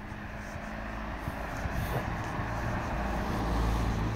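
A car driving along the street toward the microphone, its engine and tyre noise growing steadily louder and loudest near the end.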